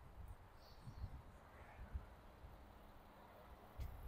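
Near silence: faint outdoor background with a few soft, low thumps.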